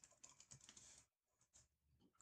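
Faint typing on a computer keyboard: a short run of keystrokes in the first second, then one more about a second and a half in.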